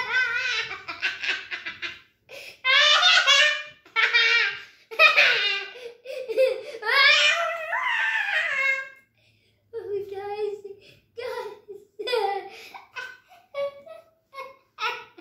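A young boy laughing hard and high-pitched in a run of long giggling bursts with quick breaths between, breaking into shorter giggles after a brief pause about nine seconds in.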